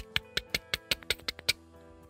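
Ticking clock sound effect, fast ticks about five a second that stop about three-quarters of the way in, over a steady music bed.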